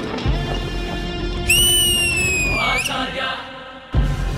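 Dance-performance backing music that drops away near the start, leaving a long, high whistling note that slides slightly down in pitch and fades; a sharp hit brings the music back in at the end.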